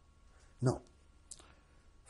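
A man says a single word, "No," in a quiet room; otherwise only low room tone, with a faint short click a little after the middle.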